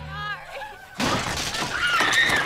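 A woman sobbing and wailing. About a second in, a sudden loud crash cuts in and runs on, and a scream rises over it near the end.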